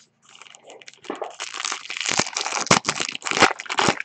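A trading-card pack's shiny wrapper being torn open and crinkled by hand. It makes a dense, irregular crackle that grows louder after about a second.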